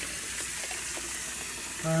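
Kitchen faucet running in a steady stream into a sink full of water, a steady splashing noise, while the unplugged drain takes the water away.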